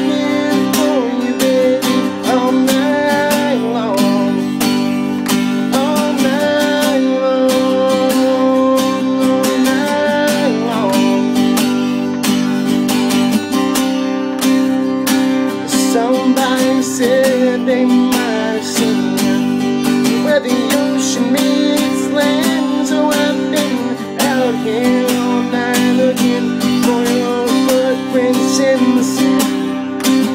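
A man singing a country song while strumming a steel-string acoustic guitar, steadily throughout.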